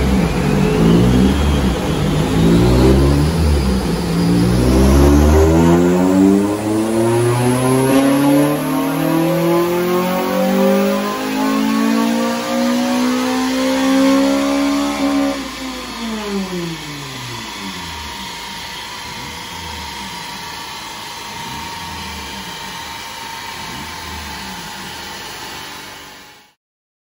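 Honda Civic FN2 Type R's 2.0-litre four-cylinder engine making a rolling-road power run. After a few short rises in revs, the revs climb in one long steady sweep for about ten seconds, then fall away as the throttle is lifted. The engine then runs on quieter to the end.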